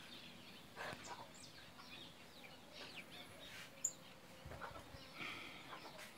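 Faint, scattered chirps of small birds in the background, with one short sharp tick a little before the fourth second.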